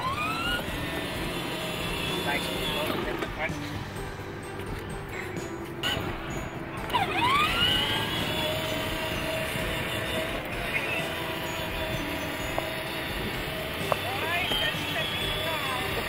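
Battery-powered ride-on toy car's small electric motor and gearbox whining steadily as it drives along, with a rising sweeping tone about seven seconds in.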